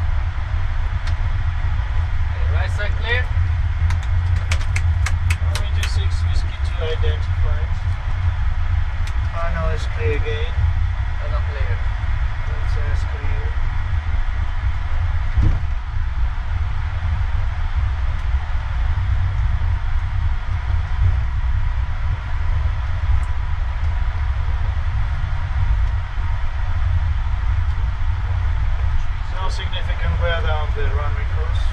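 Steady low rumble of a Boeing 787 on the runway ready for take-off, heard inside the cockpit. A quick run of clicks comes about four to six seconds in, and faint voices can be heard now and then.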